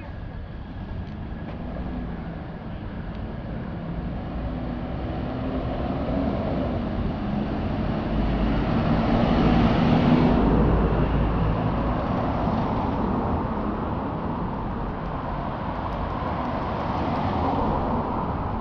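Street traffic: a car approaches and passes, with engine and tyre noise building to its loudest about ten seconds in. A second, smaller swell follows near the end as another vehicle goes by.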